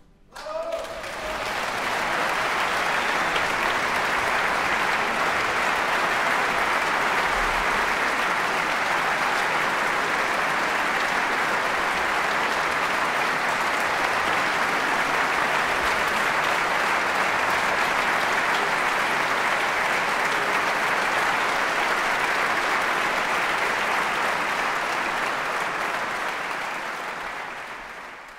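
Concert hall audience applauding at the end of a live piano concerto performance. Dense, steady applause breaks out about half a second in and fades away near the end.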